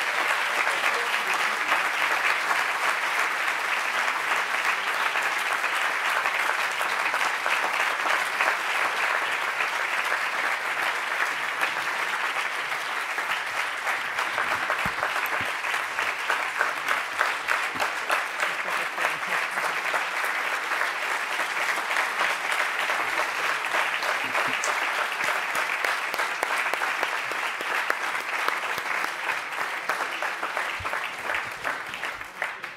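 A large seated audience applauding: sustained, dense clapping that holds steady for the whole stretch and thins slightly near the end.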